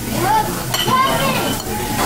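Busy restaurant background noise: a steady hiss of room din with indistinct voices of other diners.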